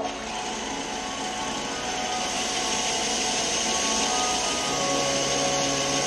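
Bench belt sander running steadily, a wooden wand blank held against the abrasive belt, making a continuous sanding hiss that grows slightly louder about two seconds in.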